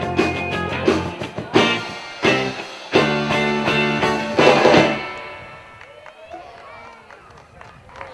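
Live instrumental rock band playing electric guitars, bass guitar and drum kit. The tune closes with a loud final chord about four and a half seconds in that rings out and fades, leaving the rest much quieter.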